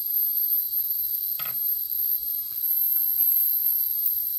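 Steady high-pitched whine of about 13 kHz from an ultrasonic speaker, driven by a homemade anti-bark device's 555-timer oscillator through an LM386 amplifier. The tone is set low enough to be audible. A soft short knock comes about a second and a half in.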